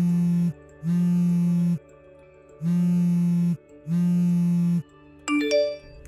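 Phone ringtone for an incoming call: a buzzy tone rings in two pairs of about one-second rings, with a pause between the pairs. A short rising three-note chime follows near the end.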